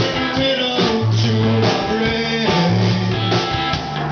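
Live rock band playing: electric guitars and drum kit over a bass line of held notes that step in pitch about every half second, captured loud and close.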